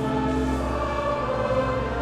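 A church congregation and choir singing a slow Dutch hymn together, the line 'en ons te slapen leggen', in long held notes.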